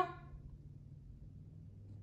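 Faint room tone with a low steady hum, just after the last word of speech trails off.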